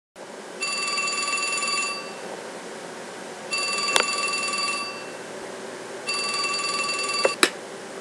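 A telephone ringing three times, each ring about a second long with a pause of about a second and a half between, followed by a sharp click near the end.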